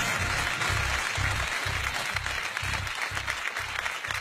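Studio audience applauding, with background music carrying a steady low beat of about two pulses a second.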